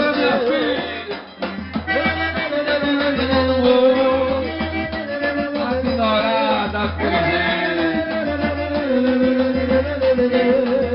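Live band playing an instrumental passage, with an accordion carrying a melody of long held notes.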